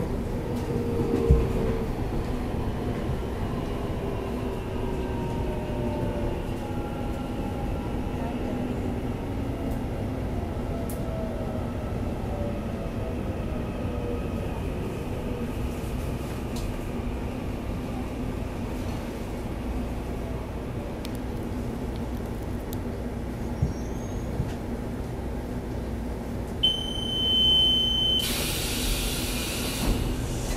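Taiwan Railway EMU800 electric multiple unit heard from inside the car as it brakes to a stop, its motor whine falling slowly in pitch. Near the end a steady high beep sounds for about a second and a half, then a loud hiss as the doors open at the station.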